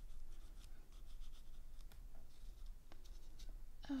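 A Tim Holtz watercolour pencil scratching and rubbing over embossed watercolour paper, a faint, uneven scribbling with a small click about three seconds in.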